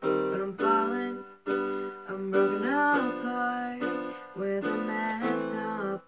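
Electronic keyboard playing a slow piano-style chord accompaniment, each chord struck and left to fade. A young woman's solo singing voice comes in over it in the middle.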